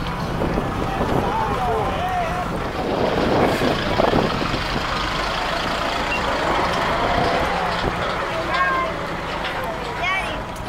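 Vehicles in a slow parade procession running, with voices and scattered calls from people on the floats over a steady hubbub.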